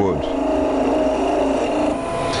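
Radius skew chisel peeling across the end grain of a blank spinning on a lathe at about 1500 rpm: a steady cutting hiss over the lathe's steady hum. Near the end the tool comes off the cut because its bevel did not stay at 90 degrees to the face.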